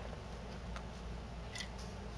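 Quiet room tone with a steady low hum and two faint light clicks, one a little under a second in and one near the end.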